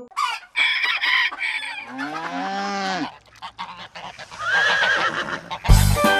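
Recorded farm-animal calls: a quick burst of honking fowl, then a long low call that rises and falls, then a shorter higher call. Music starts again near the end.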